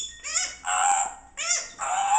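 African grey parrot imitating a donkey's bray: a see-saw hee-haw, with short rising squeaky notes alternating with longer, harsher ones, repeated twice.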